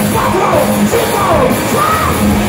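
Live hard rock band playing: distorted electric guitars, bass and drums, with the lead singer's voice sliding up and down in pitch over them.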